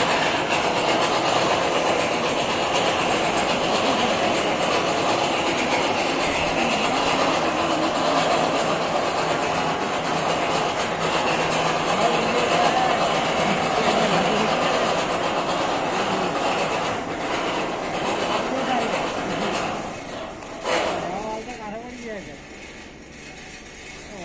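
Gantry crane running on its rails while carrying a bundle of concrete railway sleepers: a loud, steady clatter and running noise of wheels and drive. It drops away about 20 seconds in, with a single knock, leaving quieter sounds.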